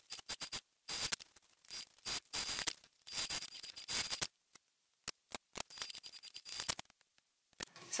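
Cotton fabric and wallet pieces being handled and worked at a sewing machine: irregular soft rustles, taps and small clicks coming and going in short clusters.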